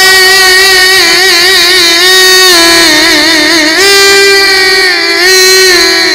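A man's solo voice singing an Egyptian religious inshad into a microphone, loud and unaccompanied, in one long melismatic line: held notes broken by quick wavering runs, with the pitch stepping up to a long held note about two thirds of the way through and then settling lower.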